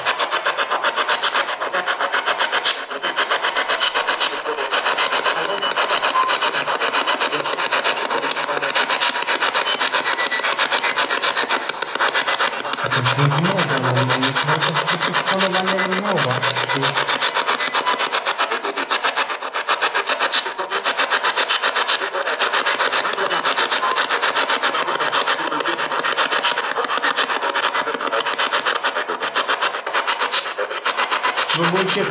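Spirit box (S-Box) radio sweeping rapidly through stations: a loud, continuous hiss of static chopped into a fast stutter. About halfway through there are a few seconds of lower, voice-like sound from the sweep.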